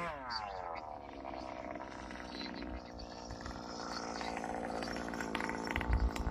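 Small two-stroke gas engine of a Primal RC dragster running steadily at low speed, heard at a distance and growing a little louder near the end.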